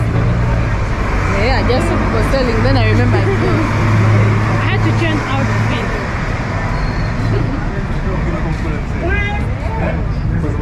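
City street traffic noise with a low, steady vehicle engine hum through the first six seconds or so, under chatter from people on the pavement.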